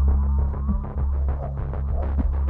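Suspense film score: a loud, low throbbing drone that drops out briefly about halfway through and comes back.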